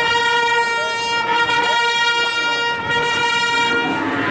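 One long horn-like note held steady at a single pitch, stopping just before the end.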